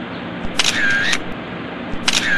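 A camera shutter sound effect, clicking once about half a second in and lasting about half a second, over a steady low background noise.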